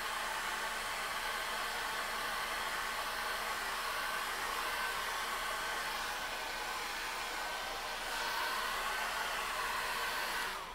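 Handheld hair dryer blowing steadily: an even rush of air with a faint motor whine, drying a freshly brushed thin glaze of acrylic paint.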